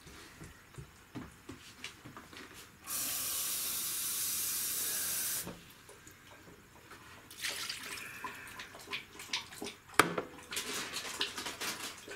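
Water poured from a bowl into the metal pot of a FreshTech jam and jelly maker: one steady pour lasting about three seconds. Light clicks follow, with a single sharp knock near the end.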